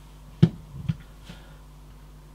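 Portable NAS hard-drive enclosure set down on a bench: one sharp knock about half a second in, then a few lighter taps of handling.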